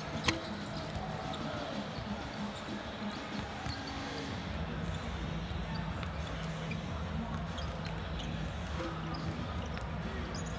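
Basketball arena ambience: basketballs bouncing on the hardwood court over a steady murmur of crowd chatter, with one sharp knock about a third of a second in.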